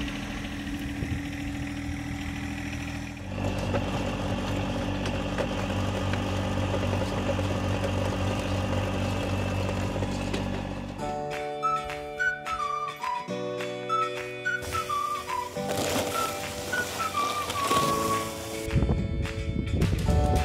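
A John Deere tractor's engine runs steadily, driving a post-hole auger, and grows louder about three seconds in. From about eleven seconds, music with a whistled melody takes over.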